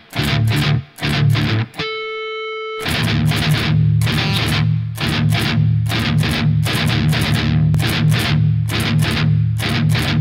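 Distorted electric guitar playing a heavy riff. It starts with a few short chugged strums. About two seconds in, a single ringing pinch harmonic is held for about a second. Then comes fast, steady, rhythmic chugging on the low strings.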